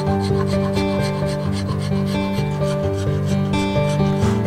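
A hand file rasping in repeated back-and-forth strokes over a knife's handle scales, with background music playing under it.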